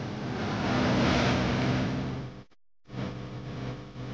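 ATV engine running steadily as the quad ploughs through wet mud and water, with a hiss of splashing that swells and fades over the first two seconds. The sound cuts out completely for about half a second, then the engine is heard again.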